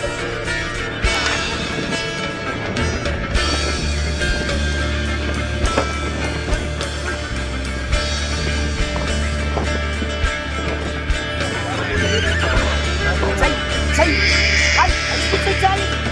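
Background music with a steady bass line throughout. Near the end a horse gives a loud, high whinny.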